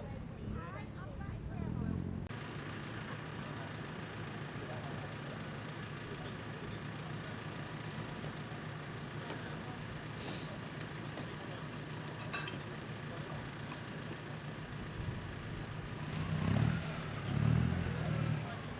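An engine idles steadily, with indistinct voices briefly near the end.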